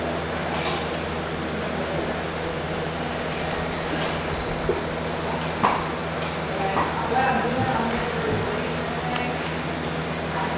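Indistinct background voices over a steady low hum, with a couple of sharp knocks around the middle.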